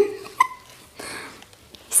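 A woman's short vocal sounds: the tail of a word, then one brief high squeak-like giggle about half a second in, with little else after.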